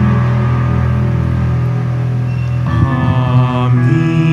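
Church music during the offertory of Mass: long held chords, with a new phrase of wavering notes coming in about two and a half seconds in.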